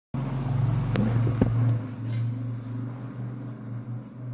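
A steady low hum, with two sharp knocks about a second in, as the recording phone is handled and turned.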